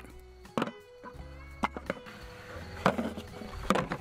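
Background music with plucked guitar. Over it come about four sharp, irregular knocks, which fit wooden cedar dice being dropped into a plastic bucket.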